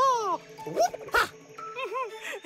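Wordless cartoon animal vocalizations, short rising-and-falling voiced sounds and one long falling call at the start, over a music score, with a couple of sharp clicks about halfway through.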